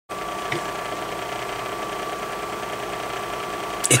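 A steady machine-like hum with a thin, constant high tone running through it, and a brief faint click about half a second in.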